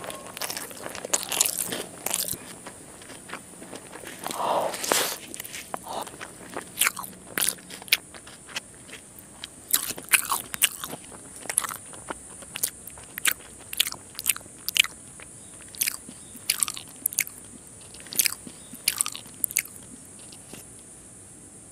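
Close-miked mouth sounds of eating rice with fish curry and fried fish by hand: chewing and crunching, with a string of sharp, irregular clicks and smacks a few times a second.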